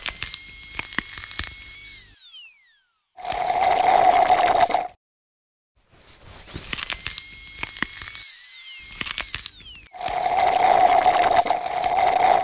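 Dental drill whining at a steady high pitch, spinning up and then winding down with a falling whine, twice. Each run is followed by a louder, rough hissing burst of about two seconds.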